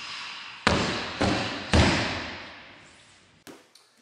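Three heavy punches landing on leather focus mitts about half a second apart: a three-punch combination. A short rushing sound comes just before the first hit, and each hit rings out in a long echoing fade.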